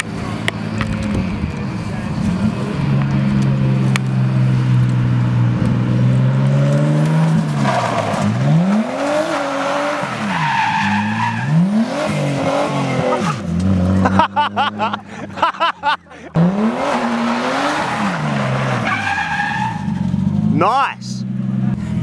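A car's engine held at high revs, then surging up and down again and again as the car drifts, with its tyres squealing and skidding on the road surface.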